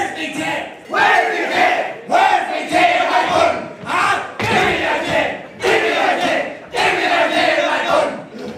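A group of men shouting a haka chant in unison, in loud shouted phrases that come about once a second with short breaks between.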